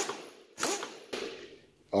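Pneumatic power drawbar on a Bridgeport Series 1 milling machine running in reverse to loosen the drawbar and release the tool: a short burst of the air motor with a hiss of exhaust air, loudest about half a second in and dying away by about a second and a half.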